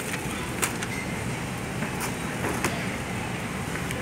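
Steady road and engine noise inside a car driving through rain on a wet road, with a few sharp ticks scattered through it.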